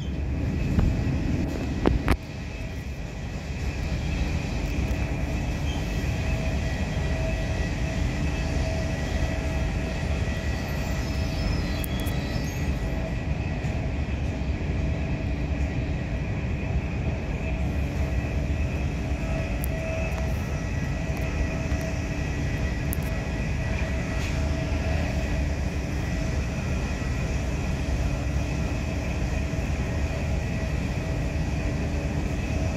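Passenger train running along the line, heard from inside the carriage: a steady rumble of wheels on rail with a faint steady hum over it, and a couple of knocks in the first two seconds.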